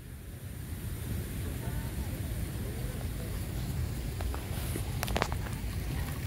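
Low, steady wind rumble on a cell phone's microphone as it is carried outdoors, with faint distant voices and a few sharp clicks about five seconds in.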